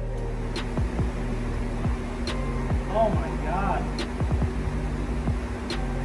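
Caulking gun loaded with windshield urethane, its trigger clicking four times, about every second and a half, as the bead is squeezed out, over a steady hum.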